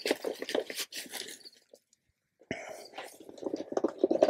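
A plastic scoop crunching and rustling through dry loose substrate mix, in two bouts with a short silent pause between them, the second starting suddenly about halfway through.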